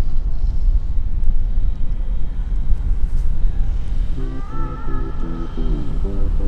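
Wind buffeting the microphone high up, heard as a loud, uneven low rumble. Background music with a regular pulse comes in about four seconds in.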